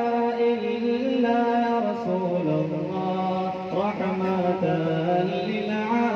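Men chanting a devotional salaam to the Prophet, slow and unaccompanied, in long held notes that step and glide from one pitch to the next.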